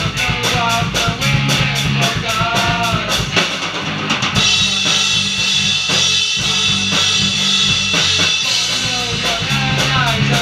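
Three-piece rock band playing live: electric guitar, bass guitar and drum kit. A fast, steady drum beat under bending guitar notes, then from about four seconds in the beat thins beneath a sustained ringing guitar sound, and the full beat returns near the end.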